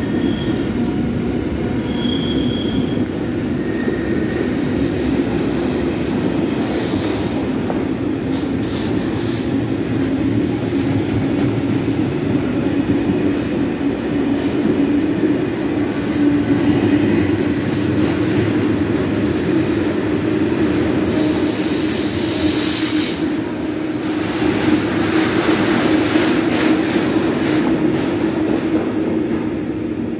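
Freight train of hopper wagons rolling past at speed: a steady rumble of steel wheels on rail, with two short high-pitched wheel squeals near the start and a loud hiss lasting about two seconds, beginning about 21 seconds in.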